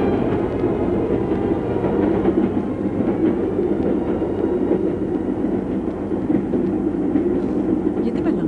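Sound effect of a moving train: a steady rumble with rattling carriages, typical of a train under way.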